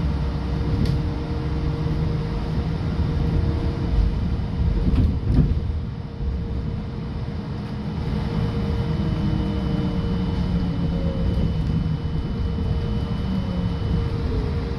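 Trolleybus interior while running: a steady low rumble with a constant hum, a couple of knocks about five seconds in, and a thin high whine joining in the second half.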